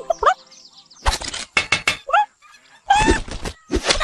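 Animated rooster clucking and squawking in a string of short calls, several of them rising sharply in pitch.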